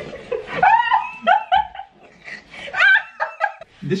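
High-pitched laughter in two bursts, the first about a second in and the second near the end.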